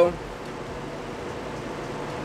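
Steady background noise: an even hiss with a faint steady hum, like a fan running in the room.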